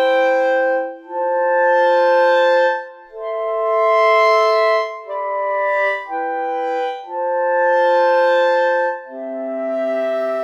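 Sampled clarinet from the 8Dio Clarinet Virtuoso software instrument playing sustained three-note chords, with legato switched off so the notes sound together polyphonically. Each chord swells and fades, and the harmony moves on about every one to two seconds.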